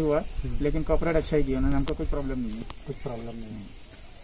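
Only speech: a man talking, which trails off a little after three seconds, over a steady low rumble.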